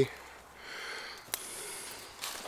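A soft breath close to the microphone, an exhale swelling and fading over about a second, with a single sharp click a little past halfway.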